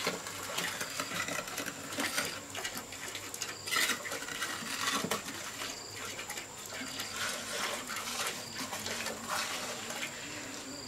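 Small steel trowel scraping and scooping wet cement mortar, an uneven run of short scrapes and dabs.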